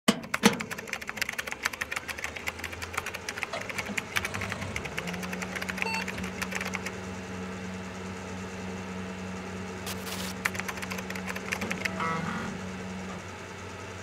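Electronic intro sound effects: rapid, dense clicking and ticking like fast machine typing over a low steady hum, with a few short beeps about six seconds in. The clicks thin out after about seven seconds, with a brief hiss about ten seconds in.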